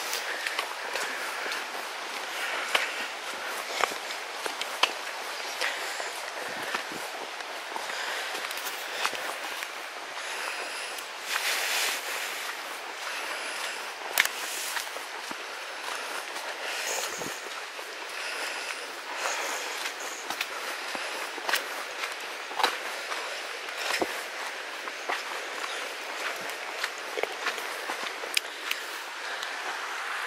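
Footsteps of walking boots on a stony, leafy woodland track, irregular crunching steps over a steady background hiss.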